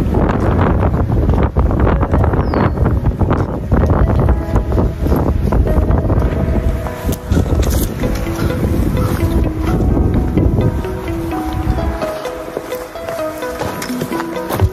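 Wind buffeting the microphone in gusts, dropping away about twelve seconds in. Background music with sustained notes plays throughout.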